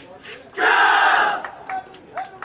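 A large squad of commandos shouting together in one short battle cry, starting about half a second in and lasting under a second, as they strike in an unarmed-combat drill.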